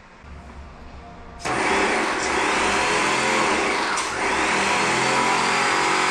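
Graco airless paint sprayer's pump kicks in about a second and a half in and runs loudly and steadily, feeding paint to the pressure roller while the air is pushed out of the line.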